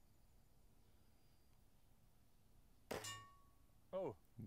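Near silence, then a single shot from a Diana 54 Airking Pro spring-piston air rifle about three seconds in: a sharp crack followed by a short metallic ring.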